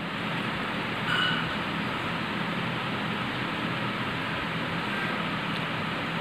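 Steady hiss of background noise with a faint low hum underneath, swelling slightly about a second in.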